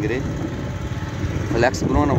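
Motorcycle running along a dirt road, heard from the pillion seat as steady low engine and road noise.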